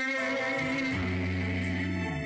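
Male singer holding long notes into a microphone over band music, with a low bass line coming in about a second in.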